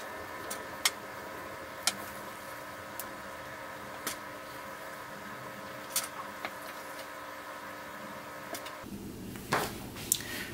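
Plastic sewing clips snapping onto thin leather shoe pieces, a handful of short sharp clicks with handling of the leather between them, over a steady faint hum.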